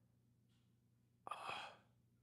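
Near silence, then about a second and a quarter in, one short breathy sigh from a man, with a faint click in the middle of it.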